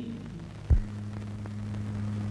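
The last of a song dies away, then a sharp click about two-thirds of a second in, followed by a steady low electrical hum with faint hiss on an old film soundtrack.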